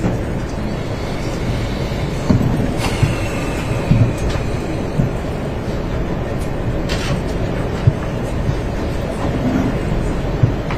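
Steady low rumbling room noise from courtroom microphones, with a few scattered soft knocks and bumps.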